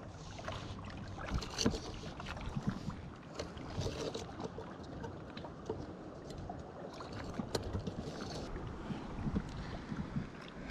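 Water lapping against shoreline rocks under a steady wind haze, with scattered small taps and scrapes as a hand feels about in a crack between concrete and an old timber post.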